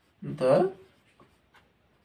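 Marker pen writing on a whiteboard, a few faint short strokes.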